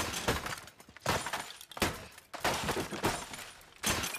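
A laptop being smashed with a hammer: repeated crunching, shattering blows, about one every two-thirds of a second, as its casing and screen break apart.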